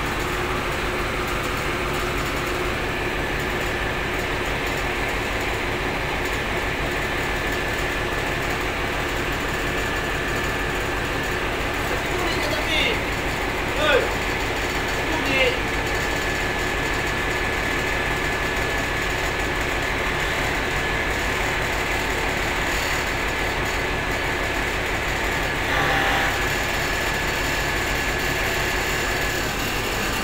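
Large diesel bus engine idling steadily. A thin high whine comes in a few seconds in and holds until near the end.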